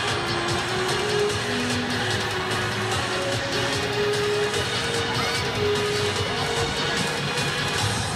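Music playing over a football stadium's public-address system, a melody of short held notes, with steady crowd noise beneath it.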